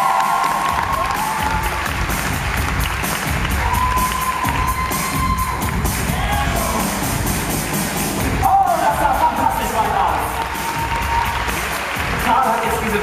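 Loud arena music playing while a live crowd cheers and whoops. The cheering swells about eight and a half seconds in.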